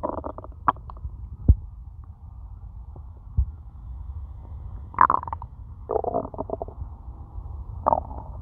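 A hungry human stomach growling: a steady low rumble with squelchy gurgles at the start, about five seconds in, for most of a second around six seconds, and again near the end, plus a few short clicks early on.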